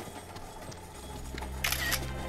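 A smartphone camera shutter sound: one short, sharp burst near the end, over a low steady drone.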